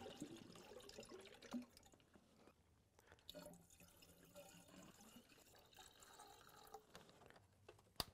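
Faint trickling and dripping of coolant being poured into an engine's cooling system, with a few light knocks.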